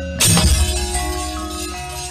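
Javanese gamelan playing, with a loud metallic crash about a fifth of a second in, typical of the dalang's kepyak metal plates being struck to mark puppet movement. Struck metal keys and a low gong hum ring on afterwards.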